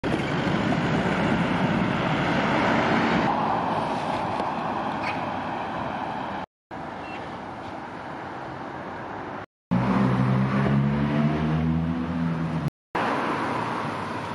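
Street traffic: cars passing on the road, first a loud tyre-and-engine roar that fades away. Later a vehicle engine's low hum rises slightly in pitch. The sound drops out abruptly twice.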